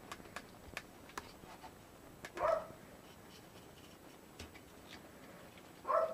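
Craft knife cutting notches into moulded pulp egg-carton cardboard: a series of small sharp clicks and scratches, most of them in the first two seconds. A short hum-like sound about two and a half seconds in.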